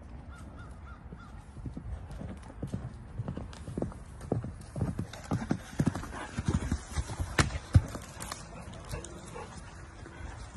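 A horse's hooves thudding irregularly on a soft, leaf-littered dirt path as it moves around close by. The thuds come thicker and louder through the middle, with a sharp click about three-quarters of the way through.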